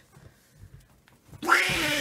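Near silence for about a second and a half, then a person's voice breaks into a long drawn-out vocal sound that is not words.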